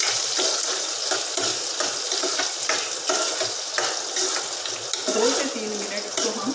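Sliced onions frying in hot oil in a kadhai, sizzling steadily, while a spatula stirs them with repeated scraping strokes against the pan.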